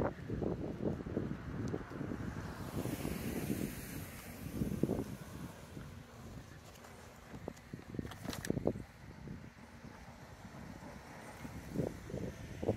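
Wind buffeting a handheld microphone outdoors, a low rumble, with a few short knocks about five seconds in and again a little after eight seconds.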